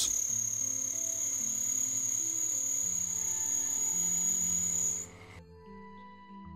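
Sieg C3 mini lathe running with a steady high-pitched whine over spindle noise, cutting off suddenly about five seconds in. Soft background music plays underneath.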